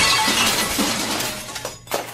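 Glass front of a snack vending machine smashed by a punch: a sudden crash, then shards tinkling as it dies away over about a second and a half. A short sharp snap comes near the end.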